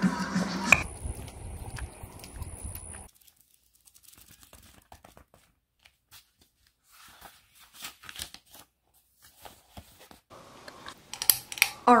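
Background music stops abruptly early on, giving way to a low wind-like rumble on the microphone, then to faint, scattered rustles and clicks of paperback pages being handled. A woman's voice starts near the end.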